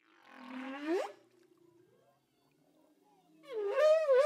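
Whale calls: a low call sweeping upward in pitch, then after a pause a second, wavering call near the end.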